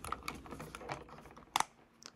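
A plastic USB mouse's top shell being pressed down onto its base: light plastic ticks and creaks as it is squeezed, then one sharper click about a second and a half in as a snap-fit clip catches. The clips seating show the shell is closed properly.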